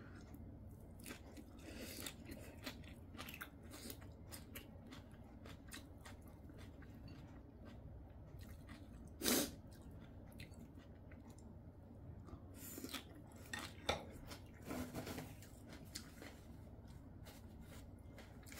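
Close-miked, faint chewing and crunching of crisp vegetable side dishes, with small clicks of chopsticks against bowls. A few louder short sounds come about nine seconds in and again between about thirteen and fifteen seconds.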